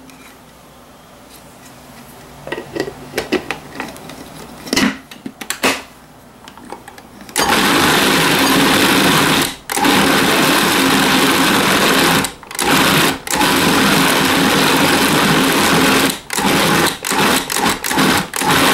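Cuisinart Pro Custom 11 food processor motor running, its blade mixing chopped dill into a paste of frozen ground beef and pork for Vietnamese dill beef sausage. It starts loud about seven seconds in, after a few light clicks and knocks, and is stopped briefly several times as it is pulsed.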